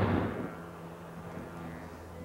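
Wind rumbling on the microphone, dying away about half a second in. A faint, steady low hum stays underneath.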